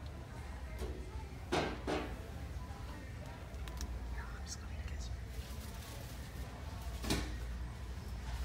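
Hushed whispering and faint background music over a low steady hum, with two brief louder sounds, about one and a half seconds in and again about seven seconds in.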